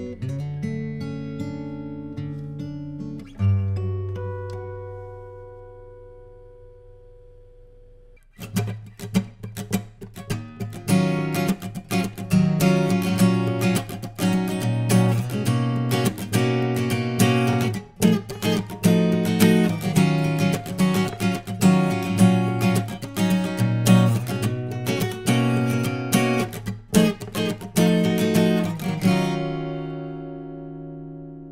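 Yamaha LJ26 ARE all-solid acoustic guitar: its last notes ring out and fade away over several seconds. About eight seconds in, a Yamaha LS26 ARE takes over with busy fingerstyle playing, ending on a ringing chord near the end.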